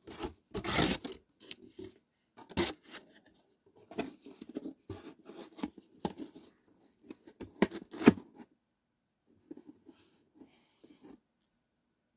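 Packaging rustled and torn open by hand to free a plastic cake knife, in irregular crinkly bursts with the loudest tear about eight seconds in; it stops about a second before the end.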